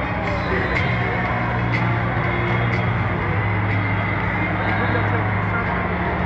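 Indoor crowd chatter, many voices mixed together, over a steady low hum that drops away near the end.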